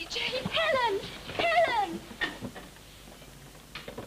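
A girl crying out twice in distress: two high, wavering cries in the first two seconds, each falling in pitch, followed by a few short, sharp sounds.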